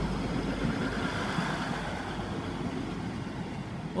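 Class 156 Super Sprinter diesel multiple unit pulling away and passing close by: its underfloor diesel engines running under power with wheel and rail noise, a steady rumble that eases off slightly as the train draws away.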